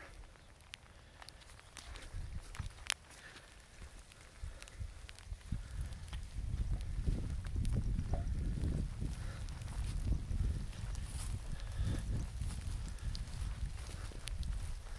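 Footsteps on wet, muddy grass, with a low rumble on the microphone that grows louder about halfway through, and a few light clicks.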